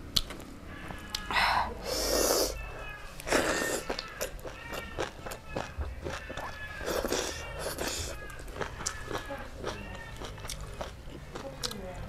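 Close-miked eating by hand: wet chewing and lip-smacking clicks, with a few louder hissing bursts.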